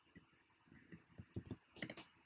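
A string of faint, irregular clicks from someone working a computer, heard against near silence.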